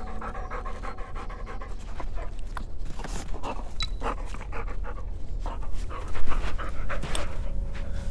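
A yellow Labrador panting fast and hard, mouth open, in a car heating up in warm weather: panting to shed heat. The breaths get louder about six seconds in.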